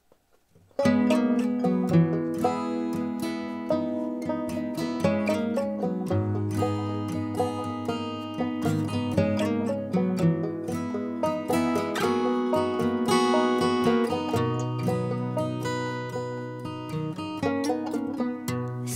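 Indie folk band playing an instrumental intro: banjo and acoustic guitar picking over upright bass and cello. It starts abruptly about a second in.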